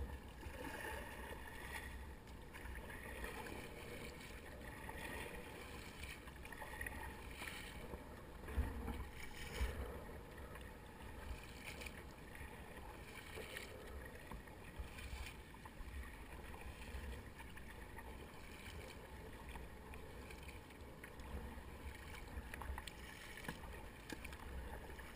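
Paddle blades dipping and splashing stroke after stroke, with water slapping and lapping against the hull of a Fluid Bamba sit-on-top kayak. There are two louder splashes about nine and ten seconds in.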